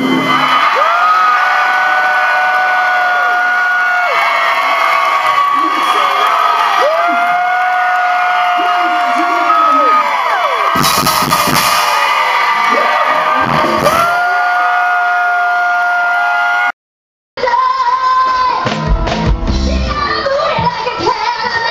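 Live pop dance music from a band on stage, with long held high notes that come back about every six seconds, heavy bass hits in the middle, and some audience whoops and yells. The sound cuts out completely for under a second near the end, then the music comes back sounding duller.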